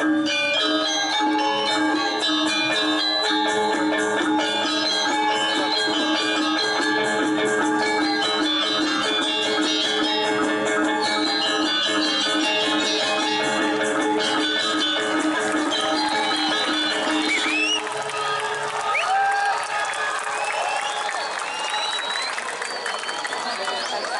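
Balinese gong kebyar gamelan playing, with bronze metallophones and gongs ringing on sustained pitches, until the piece ends about 18 seconds in. Audience applause with a few rising whistles follows.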